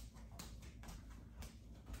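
Quiet room tone with a few faint, light taps about half a second apart.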